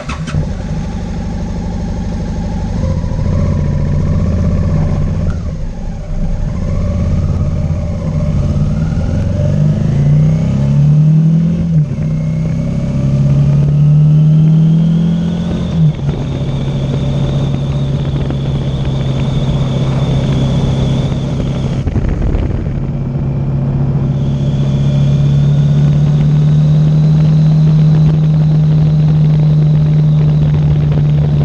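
Motorcycle engine starting suddenly and running low, then pulling away and accelerating through the gears, its pitch climbing and dropping back at each shift. It then cruises at a steady speed with wind rush, with a short dip off the throttle a little past the middle.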